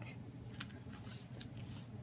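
Scissors cutting paper: a few quiet snips, the sharpest about one and a half seconds in.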